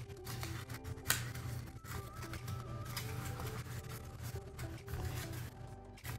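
Background music with steady tones, over soft rustling and creasing clicks from a paper pill-bottle base being folded by hand.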